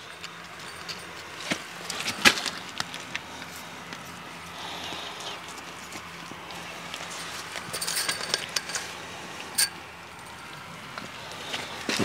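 Scattered small clicks and light metallic rattles of scrap wire being pushed through holes in a fiberglass fence pole and twisted tight, with the coiled metal spring of an electric-fence gate being handled close by.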